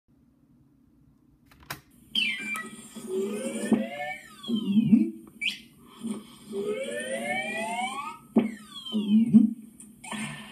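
Cartoon sound effects for drinking through a straw: whistle-like glides that rise and fall in pitch, in two rounds, over a steady low hum. They begin after a click about two seconds in and are played through a computer's speaker.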